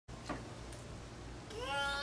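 A single short, high vocal call, rising slightly in pitch, starting about one and a half seconds in.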